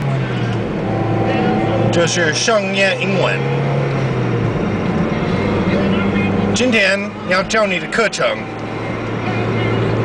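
Car engine running steadily while driving, heard from inside the cabin, its pitch stepping down about half a second in. A voice speaks over it twice, a couple of seconds in and again around the seven-second mark.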